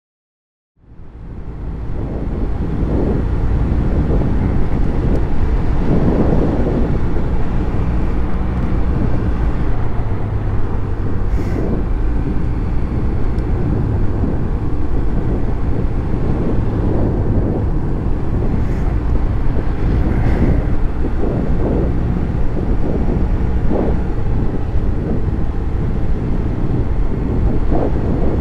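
Yamaha TMAX560 maxi-scooter on the move: its engine running under a steady low rumble of wind and road noise, which fades in about a second in.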